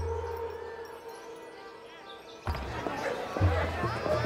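Orchestral film score: a low sustained drone with a held tone, slowly fading. About two and a half seconds in, it gives way suddenly to street chatter from a crowd, with low thuds.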